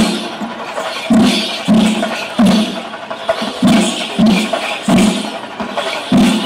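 Procession drums beating a repeating pattern of three heavy strokes and a short pause, about one group a second, over crowd noise.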